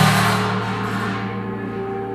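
Large tam-tam swelling to a bright, shimmering wash that peaks at the very start and dies away over about a second and a half. Underneath, steady held tones go on throughout, from the piece's acoustic feedback and bass harmonics.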